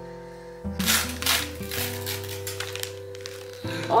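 Wrapping paper being torn and rustled in a quick series of short rips as a present is unwrapped, over background music of sustained notes.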